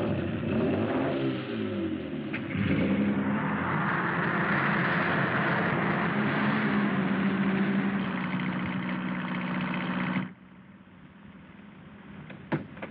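Open car's engine running at speed under a rush of wind and road noise, its pitch dipping and climbing again in the first couple of seconds. It cuts off abruptly about ten seconds in, leaving only a quiet background.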